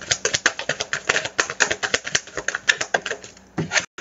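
A deck of tarot cards shuffled by hand: a rapid run of card clicks and slaps, about eight to ten a second, thinning to a few separate clicks near the end as cards are set down.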